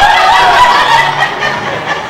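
Two women laughing and snickering.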